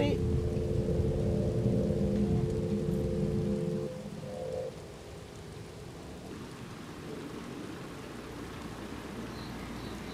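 Low rumble of a car cabin on the move, with a steady two-note tone over it, which stops after about four seconds. A quieter, even hiss of rain on a wet street follows.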